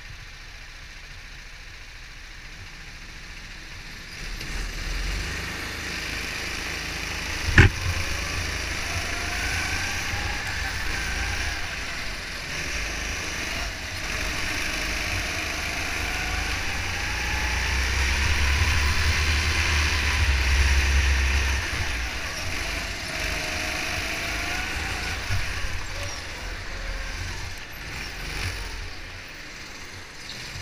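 Go-kart engine heard onboard, quieter at first and then running louder from about four seconds in, its pitch rising and falling as the kart speeds up and slows through the corners, over a low rumble. A single sharp knock sounds about seven and a half seconds in.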